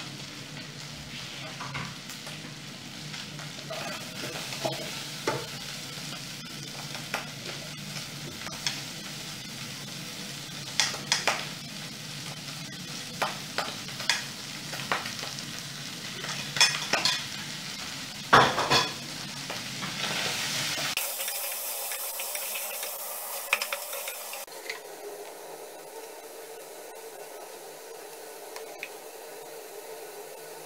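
Pork frying and sizzling in a pot, stirred with a wooden spoon that knocks and scrapes against the pot, the knocks thickest as tomatoes are scraped in from a plate. About two-thirds of the way through the sound changes suddenly to a loud hiss for about three seconds, then a steadier hum.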